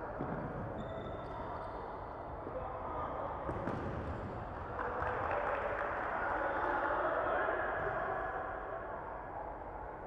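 Futsal being played in a large indoor hall: a few dull thuds of the ball being kicked and bouncing on the wooden court, over players calling out.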